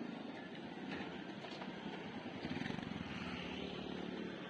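Busy street traffic, with a motorbike engine passing close. It is loudest a little past halfway through.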